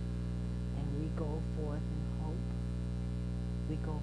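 Steady electrical mains hum with a stack of overtones, running evenly through the sound under a slow-speaking voice.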